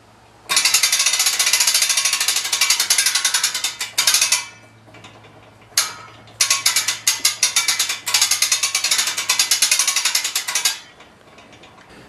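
Hand-wheel boat-lift winch being cranked, its ratchet pawl clicking rapidly over the teeth in three spells: a long run, a short burst near the middle, then another long run.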